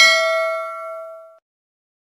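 Notification-bell 'ding' sound effect from a subscribe-button animation: a bright bell tone with several pitches that rings out and fades, stopping about a second and a half in.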